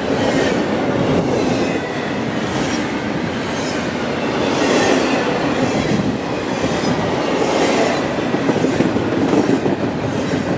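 A double-stack intermodal container train's well cars rolling past close by: a steady rumble of wheels on rail with clattering wheels and couplings.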